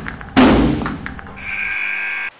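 A loud sudden thump-like burst that fades over about a second, then the arena's game-clock buzzer sounds as a steady horn from about a second and a half in, marking the end of regulation time.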